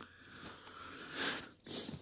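A faint sniff: a person drawing breath in through the nose, swelling about a second in.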